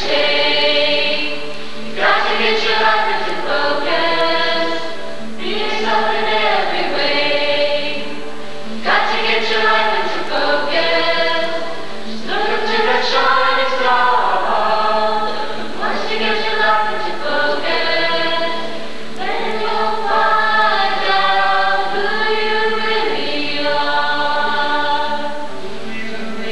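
A group of voices singing a song together as a choir, in phrases of a couple of seconds each.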